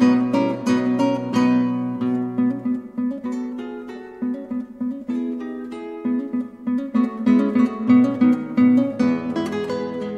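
Acoustic guitar playing an E major chord note by note in a picked pattern, with the notes following each other a fraction of a second apart. The bass drops away about three seconds in, and a new, lower voicing of the chord comes in near the end.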